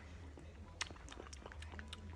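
Faint mouth sounds of eating ice cream off a spoon: small wet clicks and smacks as it is swallowed, over a low steady hum.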